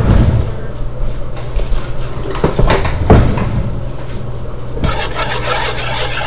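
A utensil stirring sugar into thick tomato sauce in a saucepan, scraping and rubbing against the pot in irregular strokes.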